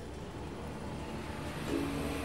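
A steady low rumble of background noise, then plucked ukulele music starting near the end.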